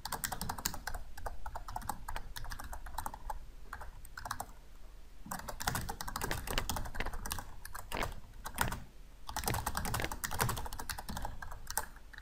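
Typing on a computer keyboard: quick runs of key clicks, with two short pauses, about five seconds in and again near nine seconds.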